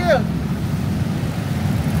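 Steady low rumble of slow road traffic, cars and motorbikes passing close by. A man's shouted call cuts off just after the start.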